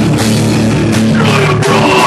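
A hardcore band playing loud and live: electric guitars and drums.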